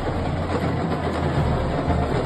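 Supporters' drums and percussion beating in a stadium crowd.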